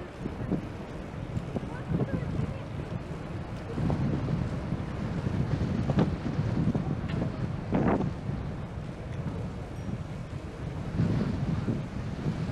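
Wind buffeting the microphone of a bicycle-mounted action camera while riding, a steady low rumble, with a couple of short sharp sounds about halfway through.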